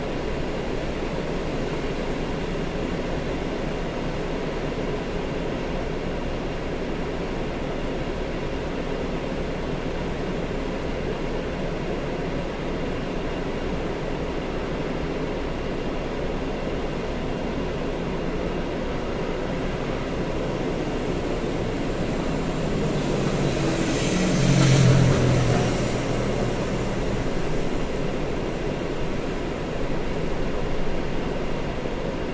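Steady road-traffic and engine hum around a car standing still in a queue. Another vehicle's engine swells and fades as it passes close by, loudest about 25 seconds in.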